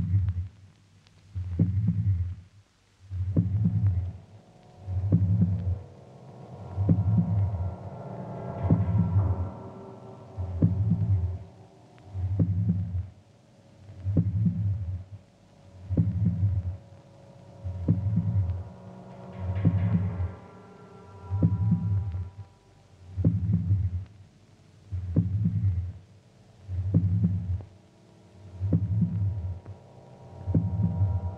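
End-credits theme music: a slow, low pulse like a heartbeat, about one beat every two seconds, under held tones that come in after a few seconds and swell twice.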